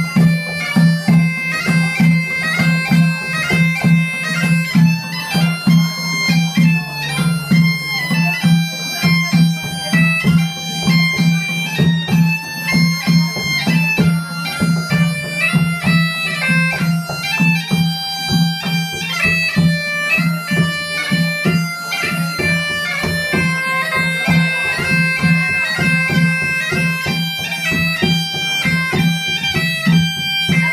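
Bagpipe playing a lively traditional Irish march over its steady drone, with strummed guitar and a drum keeping an even beat behind it.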